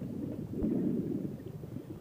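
Wind rushing over the microphone as an engine-out paramotor glides down, heard as a low, uneven rumble with no motor running.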